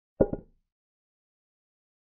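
Chess software's piece-move sound effect, a short wooden knock doubled in quick succession, as a pawn captures on the digital board.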